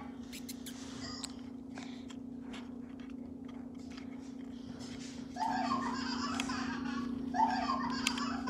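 A steady low hum with scattered faint ticks, then from about five seconds in, laughter-like sounds.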